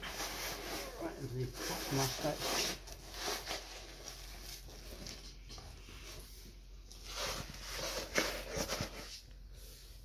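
Hook-and-loop (Velcro) straps of a Sager traction splint being pulled and pressed shut around a leg. There are several short tearing sounds, near the start and again about seven seconds in, with some low murmured speech.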